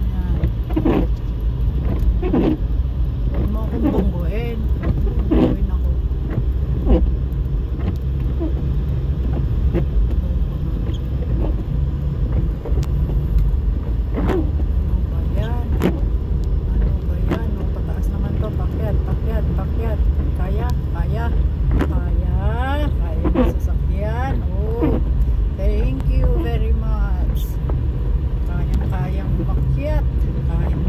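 Inside a car driving on a snow-covered road: a steady low rumble of engine and tyres, with a voice heard over it at times.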